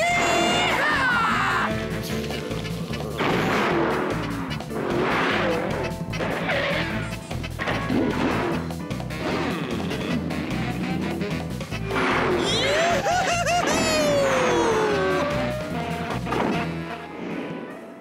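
Cartoon score with a steady beat, overlaid with crash and impact sound effects and sliding, whistle-like pitch glides.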